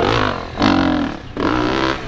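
Enduro motorcycle engine revving in three short bursts under hard load on a steep dirt hill climb.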